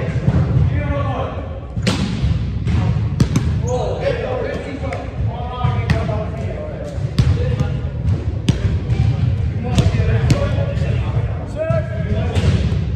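Volleyball hits and bounces on a hardwood gym floor: a string of sharp smacks about once a second, with players' voices in an echoing gym.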